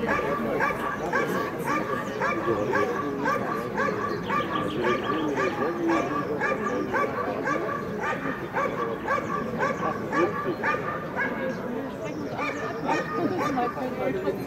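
Belgian Malinois female barking steadily at the motionless helper holding the protection sleeve, about two sharp barks a second. This is the bark-and-hold guarding of the helper in IPO protection work.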